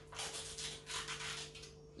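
Edible icing sheet being peeled off its plastic backing film: a run of soft rustles and rubbing as the sheet and film are flexed and pulled apart.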